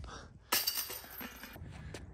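A flying disc golf disc arriving at a chain basket: a sudden clattering crash about half a second in that fades away over about a second.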